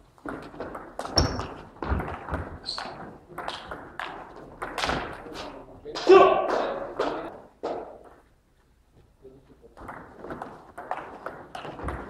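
Table tennis rally: the celluloid ball is struck by the bats and bounces on the table in a quick series of sharp clicks, echoing in a large hall. Voices are heard throughout, with a loud call about six seconds in, and a new run of ball clicks starts near the end.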